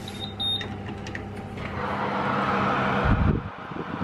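Two short electronic beeps from an oven's control-panel buttons, then the oven running with a steady hum and a fan whir that grows louder towards the middle and stops a little after three seconds in, followed by a low thump.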